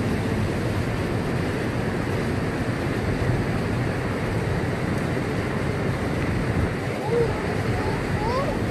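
Steady rush of fast white water over the rapids and falls of the Elbow River, an even roar that does not let up.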